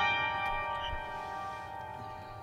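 A chord in the upper-middle register of an upright piano ringing on and slowly dying away, with no new notes played.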